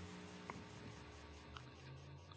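Near silence in a pause of speech: a faint steady hum, with a soft tick about half a second in and another about a second later.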